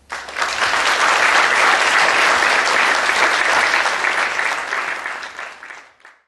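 Audience applauding, starting at once and dying away near the end.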